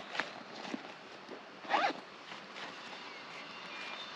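A zipper being pulled twice: a short zip right at the start, then a longer, louder one just under two seconds in.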